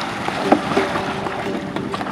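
Kayak being paddled through water: steady water noise with a sharp knock about half a second in, and some wind on the microphone.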